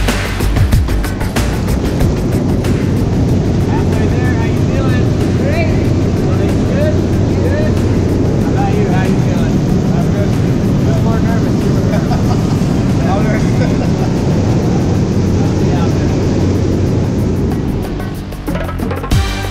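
Loud, steady engine and wind noise inside a skydiving plane's cabin, with voices calling faintly over it.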